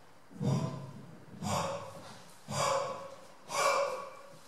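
A man's hard breaths blown straight into a microphone at floor level, pushing powdered pigment across the floor: four sharp rushes of breath about a second apart, each starting suddenly and tailing off.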